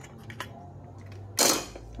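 Hands handling a circuit board and a small desoldered capacitor: a few faint clicks over a low steady hum, then a short loud burst of hiss about one and a half seconds in that fades quickly.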